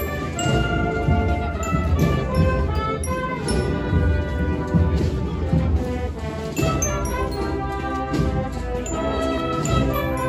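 Brass band with drums playing a Holy Week processional march: sustained brass chords over a steady low drum beat.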